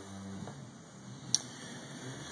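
A single sharp click a little past halfway, over faint steady background noise.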